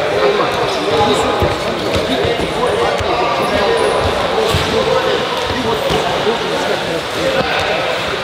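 A busy wrestling hall: a steady din of many people talking at once, with frequent dull thuds of bodies and feet landing on the wrestling mats.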